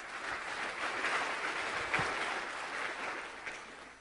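Audience applauding at the end of a talk, swelling quickly, holding, then fading away near the end.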